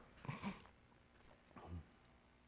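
Two brief, faint vocal sounds, a low murmur or grunt, about a quarter second in and again near the end, over near silence.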